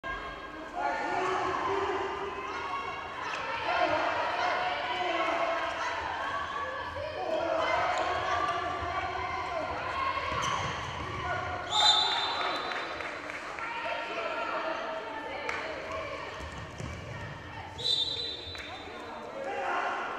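A handball bouncing on the indoor court floor during play, with indistinct shouting voices of players and spectators throughout. Two short, shrill high-pitched sounds stand out, about twelve and eighteen seconds in.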